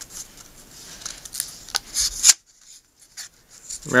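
A sheet of paper rustling and crinkling as it is rolled by hand into a dart cone around a screw, with a few sharp crackles. The sound cuts off abruptly a little past two seconds in.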